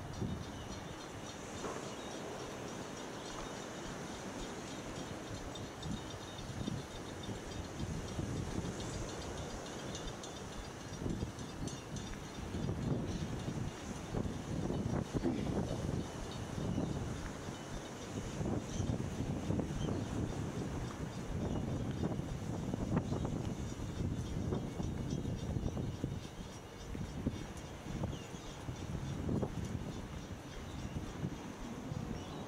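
Outdoor ambience picked up by a walked handheld camera: irregular wind rumble buffeting the microphone over a steady background hiss, gustier from about a third of the way in.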